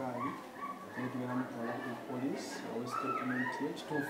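A man speaking, with short high whines over his voice and a longer rising-then-falling whine near the end.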